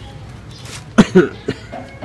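A man's short laugh: three quick, loud bursts about a second in.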